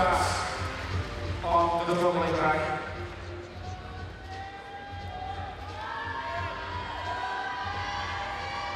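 A man's voice over the low rumble of a large sports hall, giving way after about three seconds to background music with long held notes.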